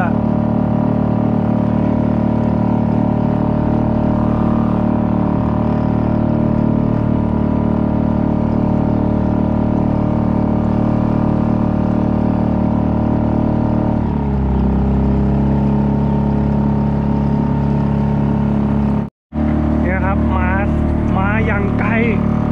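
Suzuki 2.5 hp outboard motor running steadily, driving a small kayak along a canal. About 14 seconds in the engine note drops to a lower, slower pitch as the throttle eases off.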